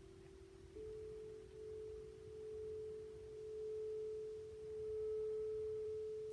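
Soft, sustained pure tones in the manner of ambient meditation music: a low steady note gives way about a second in to a higher one that holds, slowly swelling and fading.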